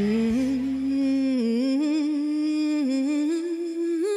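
A woman hums a held melody line with a slight waver in pitch. A low backing accompaniment underneath drops out about a second and a half in, leaving the humming alone.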